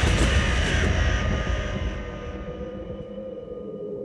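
Horror-trailer sound design: a loud deep rumble fades over about two seconds into a low, sustained drone with a few steady held tones.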